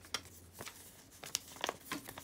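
Faint paper handling: a few small crinkles and rustles as a folded note on lined paper, held with washi tape, is lifted and unfolded.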